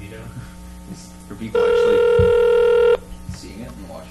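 Telephone ringback tone heard down a phone line: one steady ring tone about a second and a half long, starting about a second and a half in, while the called phone rings unanswered.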